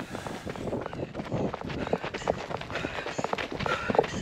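Running footsteps on a dirt trail: quick, even strides of about three a second, starting about a second in.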